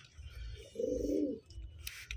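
A pigeon cooing once: a single low call of about half a second, a little under a second in.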